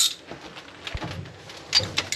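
Quiet handling noises from parts being handled by the engine: faint light clicks and one short, soft low thump about a second in.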